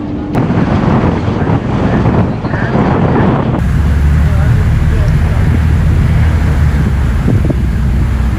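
Wind buffeting the microphone aboard a ferry on open water: a loud low rumble that turns steadier and heavier about three and a half seconds in. Passengers' voices are mixed in during the first half.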